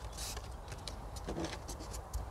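Faint rustle and light clicks of hands handling a folded cardboard trap housing and a metal paper clip.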